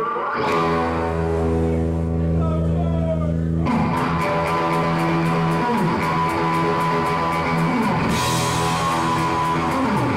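Surf rock band playing live: an electric guitar opens with a held chord and a few falling pitch slides, then drums and the full band come in about four seconds in.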